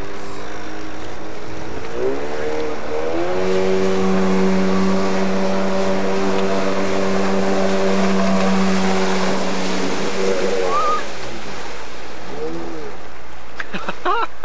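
A personal watercraft's two-stroke engine. The throttle opens about two seconds in, the engine holds a steady high pitch at speed for about seven seconds, then eases off about three seconds before the end, with the hiss of spray over it.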